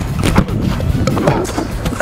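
A football kicked hard in a shot at goal: one sharp thud about half a second in, over background music.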